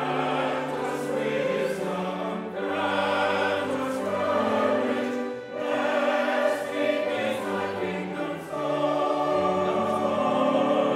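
Church choir singing a sacred piece in harmony, in sustained phrases a few seconds long with short breaths between them.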